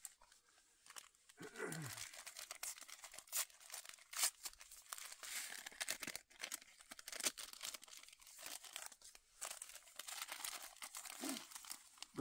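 Instant oatmeal packets crinkling and tearing as they are ripped open and emptied into a collapsible bowl: an irregular run of sharp rustles and crackles.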